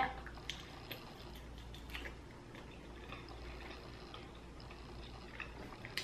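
Faint, soft chewing with scattered small mouth clicks as a bite of chewy garlic naan is eaten, over a low steady room hum.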